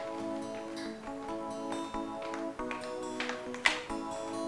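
Background film-score music of sustained chords that shift every half second or so. Over it come a few sharp taps, the loudest just before the end.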